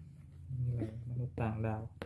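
Speech: a voice saying the Thai word for 'alien' in two short bursts, over a steady low hum.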